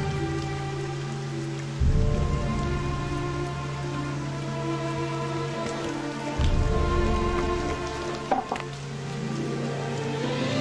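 Steady rain under background music of long held notes. Deep low rumbles come in about two seconds in and again just past six seconds.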